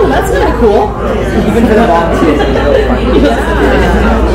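Several people talking at once: overlapping conversation and chatter in a large, busy hall.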